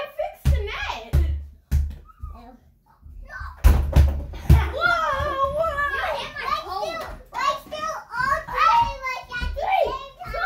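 A small rubber basketball thudding several times as it is thrown, bounced and caught in a small room: a few thuds in the first two seconds and a cluster of three around four seconds in, amid high children's voices that babble and call out through the second half.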